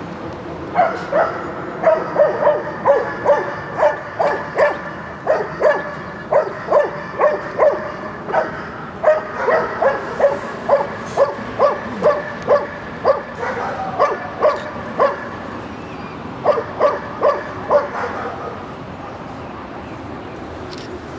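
A dog barking over and over in short, high-pitched yips, about two to three a second, with a brief pause about three-quarters of the way through before a last run of barks.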